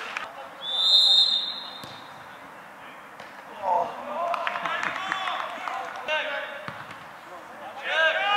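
A referee's whistle blown once near the start, a single steady high blast of about a second and a quarter, followed by men's voices calling out over the play.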